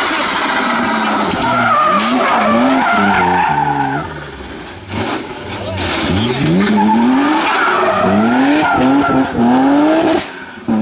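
BMW E36 race car's engine revving hard through a hairpin, rising in pitch again and again as it accelerates, with a brief drop about four seconds in as the driver lifts off. The engine then climbs through several more rising sweeps, with tyre squeal as the car slides out of the corner.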